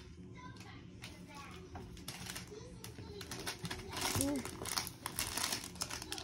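A baby crawling and playing among plastic toys: scattered soft clicks and rustles, densest around four to five seconds in, with two brief baby vocal sounds midway and about four seconds in.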